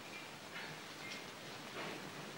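Faint steady hiss with a few soft, indistinct sounds and no clear event.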